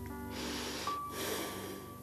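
Soft background music of long held tones. Over it, a person breathes audibly for about a second and a half, in two parts.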